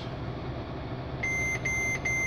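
Mercedes-Benz Actros cab warning beeper sounding over the truck's diesel idling low and steady: about a second in come two short high beeps in quick succession and the start of a third.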